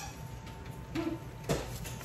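Wooden rolling pin rolling out pie dough on a kitchen counter, with a single sharp knock about one and a half seconds in.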